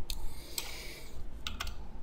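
Computer mouse sliding briefly on the desk, then a couple of quick clicks about one and a half seconds in.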